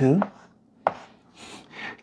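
Chalk writing on a blackboard: a sharp tap as the chalk meets the board a little under a second in, then short scratchy strokes.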